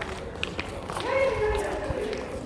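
A person's voice, one short drawn-out utterance starting about a second in, over outdoor background noise and a few light taps of footsteps.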